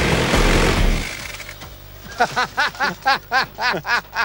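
Rotary minigun firing a continuous burst at about 3,000 rounds a minute, a dense buzzing roar that stops about a second in. A quick run of short pitched notes follows near the end.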